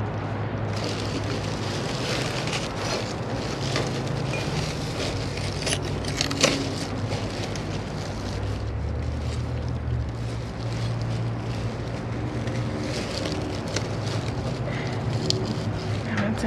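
A steady low mechanical hum runs throughout, with plastic sheeting rustling and crinkling as a potted plant is handled in a dumpster; the sharpest crackle comes about six seconds in.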